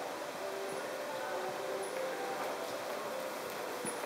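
Steady background noise of a large indoor riding arena with faint, distant voices, and a few soft hoofbeats of a horse on the arena footing near the end.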